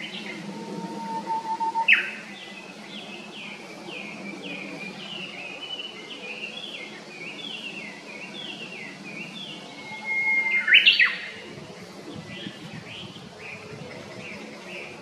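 Songbirds calling: a rapid run of short, downward-sweeping chirps, about three a second, with a few held whistled notes. Louder, sharper calls come about two seconds in and again about eleven seconds in.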